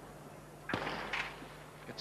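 Starter's pistol firing for a 100 m sprint start: one sharp crack about two-thirds of a second in, followed by about half a second of noise.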